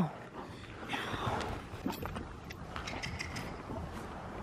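Quiet sounds of horses moving on an arena's sand footing: soft hoofbeats and small clicks of tack, with a short rushing noise about a second in.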